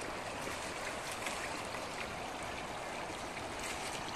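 Shallow river water running steadily over gravel and stones at the bank's edge.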